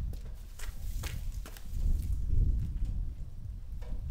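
Several hard footsteps, sharp clicks about two a second, mostly in the first half. Beneath them is a low rumble that swells around the middle and is the loudest part.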